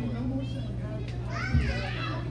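Congregation chatter in a large room, with a high-pitched voice rising and falling near the end, over a steady low hum. A single low thump about one and a half seconds in is the loudest sound.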